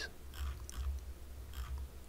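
A few faint, scattered computer mouse clicks over a low rumble.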